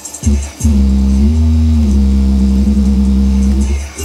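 Sony SS-VX333 speakers playing a loud, bass-heavy track. A short deep hit is followed, from under a second in, by a long held bass note that rises slightly in pitch in the middle, falls back, and cuts off near the end.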